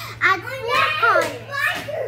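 A young girl speaking: only child speech, its words not caught by the transcript.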